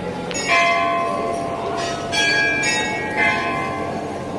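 Metal temple bells struck about four times, each strike ringing on with several clear tones that overlap the next.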